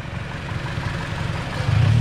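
Chevrolet car engine idling with a low rumble, getting louder near the end as the gas is pressed.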